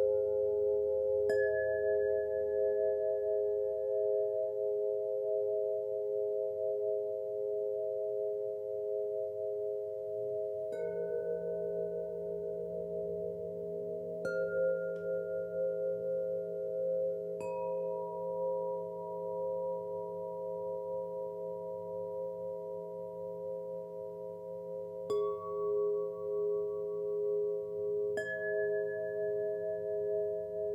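Meditation music of struck chimes over a steady, gently pulsing drone of sustained tones. Six single strikes come a few seconds apart, each ringing out long.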